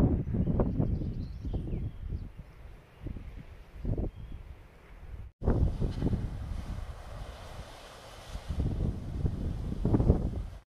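Wind buffeting the camera microphone in uneven gusts, a low rumble that swells and fades. It breaks off abruptly about five seconds in, then picks up again as steadier wind noise.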